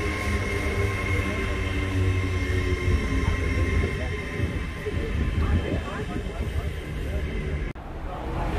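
LNER Azuma high-speed train pulling away, a steady hum of its traction equipment over the rumble of wheels on rail, fading somewhat as it goes. The sound cuts off sharply near the end.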